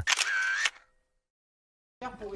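A short sound-effect sting under a second long, a clicky burst with a brief whistle-like tone, then dead silence.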